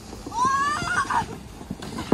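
A high-pitched cry with a wavering pitch, rising at first and then quavering for under a second, followed by a few short knocks near the end.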